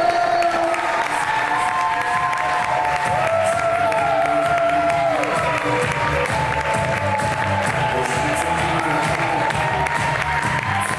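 Latin dance music playing, with an audience applauding and cheering over it.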